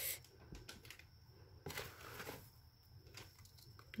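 Faint scratching and rustling of fingers pressing small organic fertilizer pellets into a pot of potting soil mixed with perlite, a little louder about halfway through.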